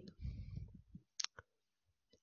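Faint rubbing and tapping of a stylus writing on a pen tablet, with one sharp click a little over a second in.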